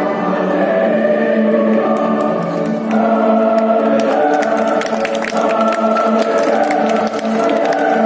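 Choir singing long sustained chords, with a change of chord about three seconds in and faint clicks through the second half.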